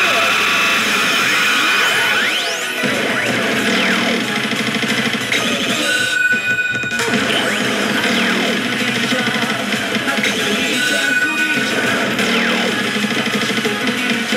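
Pachislot machine (Daito HEY! Kagami) playing its built-in chance-mode music and sound effects, loud and continuous. There is a brief break about six seconds in, then the music carries on.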